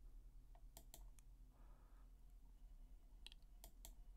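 Near silence: a low steady hum with a few faint, sharp computer clicks as the on-screen document is scrolled, four of them about half a second to a second in and three more near the end.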